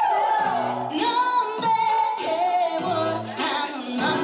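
Women singing live into handheld microphones over accompanying music with a stepping bass line.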